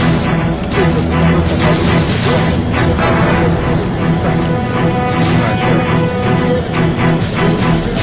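Music with a regular beat, laid over the footage.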